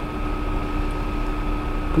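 Steady background hum and hiss from the recording setup, with a faint constant tone and low rumble. No distinct events.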